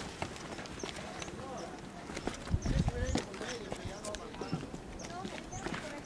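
Footsteps on stone paths and steps, with faint voices of people talking in the background and a low thump about halfway through.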